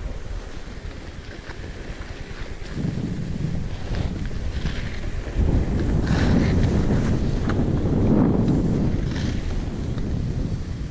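Wind buffeting an action camera's microphone together with the skis of a ski bike scraping and hissing over an icy slope during a descent. It grows louder about three seconds in and again from about halfway through.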